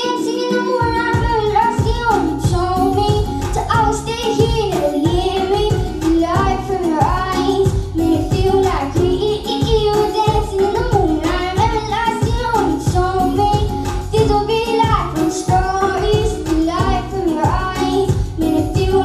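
A girl singing a song into a handheld microphone over a backing track, her voice amplified through the venue's sound system. The backing's bass and beat come in under her about a second in.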